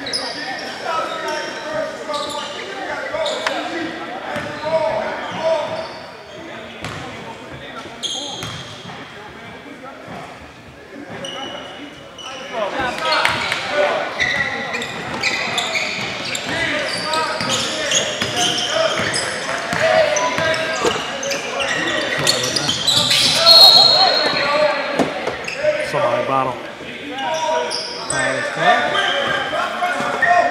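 Basketball game in a large echoing gym: a ball bouncing on the hardwood court among the voices of players and onlookers. Quieter during the free-throw setup, then busier and louder from about halfway through, once play gets going.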